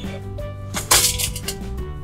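Background music with steady notes, and about a second in a short crackle as a plastic strip of adhesive dots is pulled out of the toy's clear plastic drawer.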